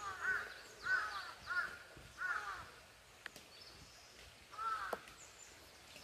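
A crow cawing: four caws in quick succession, about half a second apart, then after a pause one more.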